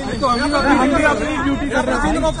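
Several men's voices talking over one another in an argument, close to the phone's microphone.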